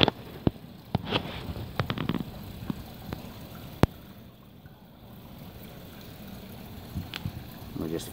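Water trickling over pebbles in a shallow indoor stream, a steady wash, with a few sharp clicks and a brief stretch of voice about a second in.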